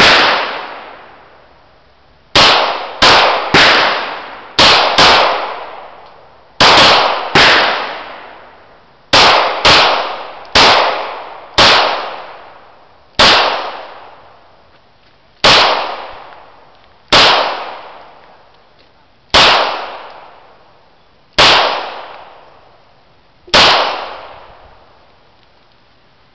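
A 9mm Beretta pistol being fired, about eighteen shots at an uneven pace, some in quick pairs and others a second or two apart. Each shot is sharp and is followed by about a second of fading echo.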